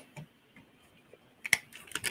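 A few sharp clicks of metal on metal: small magnets being set and snapped onto the steel platform of a bench grinder's sharpening rest. One faint click comes first, then two sharper clicks in the second half.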